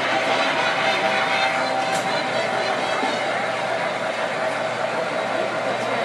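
Steady background of a busy room: murmuring visitors mixed with the running of electric model trains on the layout.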